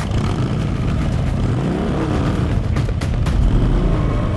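A motor vehicle's engine running and revving, its pitch rising and then falling about two seconds in, and loudest near the end.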